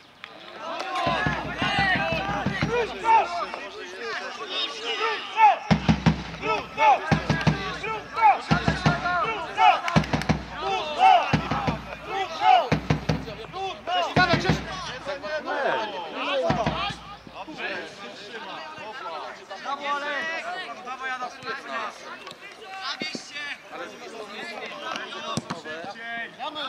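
Players' voices calling out across an outdoor football pitch during play, not close to the microphone. A string of short low rumbles buffets the microphone in the first two-thirds, then fades out.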